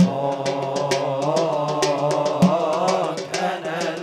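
Male voice singing a long, wavering melismatic line of Arabic devotional chant (inshad) through a PA. Underneath are a low held drone and a steady percussion beat.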